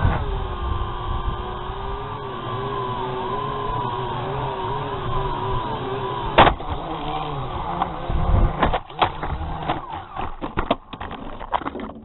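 Small camera drone's motors whining with a wavering pitch, then a sharp knock about six and a half seconds in followed by a string of irregular knocks and clatters as the drone crashes to the ground.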